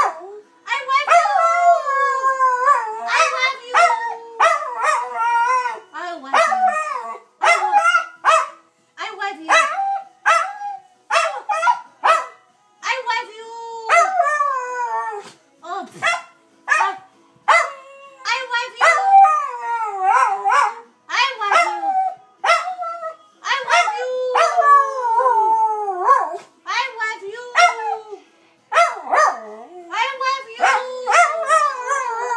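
A dachshund howling again and again in wavering, gliding calls with short breaks, and a woman's voice howling along with it.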